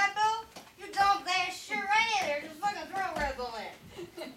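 A high-pitched voice talking, its pitch swooping up and down.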